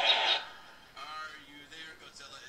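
A talk-show clip playing through the BLU Life Pure XL smartphone's built-in loudspeaker: a short loud noisy burst right at the start, then a man talking from about a second in. The sound is not particularly crisp but plenty loud.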